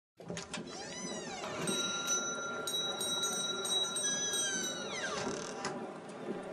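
Sound-effect ambience of a busy shop: the background chatter of a crowd. A bell-like tone rings steadily for about three seconds in the middle, and a gliding cry rises and falls about a second in, with another falling away near the end.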